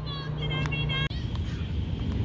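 Young players' high-pitched calls and shouts across a soccer field over a steady low rumble, with one sharp knock of a ball being kicked about a third of the way in. The sound breaks off abruptly about halfway through, and the low rumble carries on.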